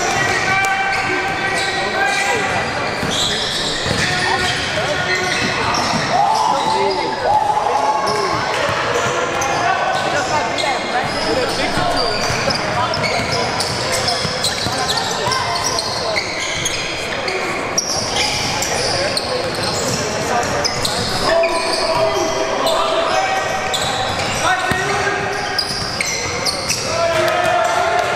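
Live basketball play in a large gym: a basketball dribbled on a hardwood court, sneakers squeaking in short high chirps, and people's voices calling out around the court.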